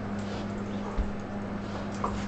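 Two golden retrievers play-wrestling on a bed: scuffling of paws and bedding with a soft thump about a second in, and faint dog vocal noise. A steady low hum runs underneath.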